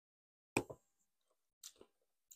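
A drinking glass set down on a bar coaster, a short soft knock about half a second in, followed by faint lip smacks while the just-sipped cider is tasted.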